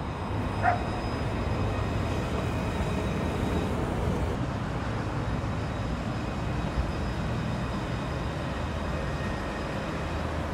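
Alstom Citadis 302 low-floor tram passing on street track, a steady running hum and rumble mixed with the noise of the street.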